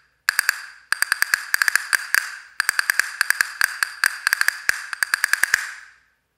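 Wooden handle-style castanets played against the thigh with a hinging German grip: runs of quick, crisp clicks, each with a short bright ring. The runs break off briefly about a second in and again about two and a half seconds in, and the last run stops just before the end.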